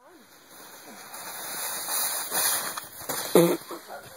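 Plastic sled hissing as it slides over snow, swelling over the first couple of seconds. About three seconds in comes a short, loud cry as the child wipes out.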